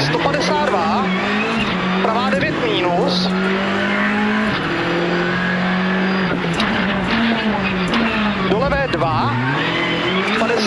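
Rally car engine heard from inside the cockpit, driven hard between corners. Its pitch climbs and falls through the gears, drops sharply at the shifts, and dips low under braking near the end.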